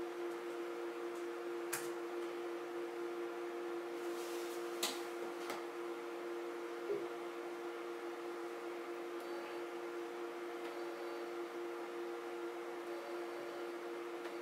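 NEMA 17 bipolar stepper motor driven by an L298 driver, giving a steady two-tone whine as it is stepped. A few light clicks come through in the first half.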